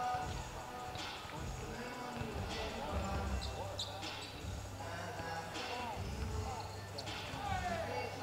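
Basketballs bouncing on a hardwood gym floor, thumping irregularly every second or so, with a few short sneaker squeaks, over music from the arena speakers and voices in the gym.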